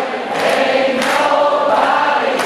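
Live concert sound heard from high in a theatre balcony: many voices singing long held notes together over the band.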